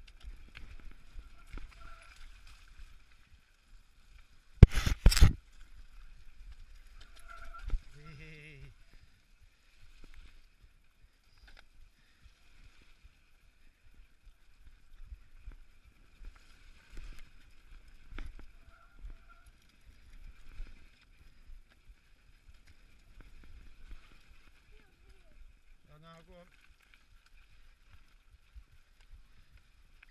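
Mountain bike descending a dirt singletrack, heard from a handlebar-mounted camera: tyres rolling over dirt and the bike rattling over bumps, with a cluster of very loud knocks about five seconds in as it hits rough ground.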